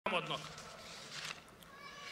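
The clipped tail of a man's spoken word at the very start, then a pause with only faint background noise from an outdoor public-address setting.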